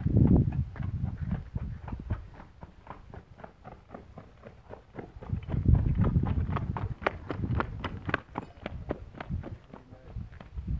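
Hoofbeats of a ridden horse on a packed dirt lane, the horse coming up at a brisk pace, passing close and moving away. The quick clops are sharpest and most rapid between about six and nine seconds in, over bouts of low rumble.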